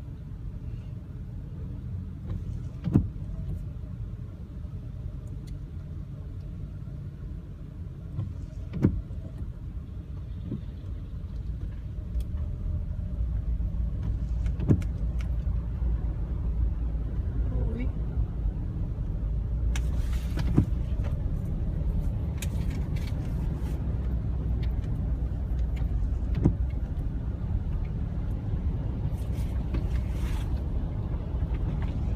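Low rumble of a car driving slowly through a flooded street, heard from inside the cabin, getting louder about halfway through as the water deepens. A sharp knock comes roughly every six seconds.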